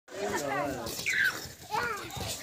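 Young children's voices calling out as they play, with a short high squeal about a second in.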